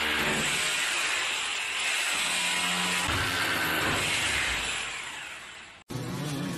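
Corded electric drill running with its bit pressed against a tempered-glass balcony panel, a steady hissing buzz that fades near the end and cuts off suddenly.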